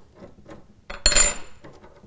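Steel parts of a small tie-rod hydraulic cylinder clinking against each other as it is pulled apart by hand: one bright, ringing metal clink about a second in, with quieter handling knocks around it.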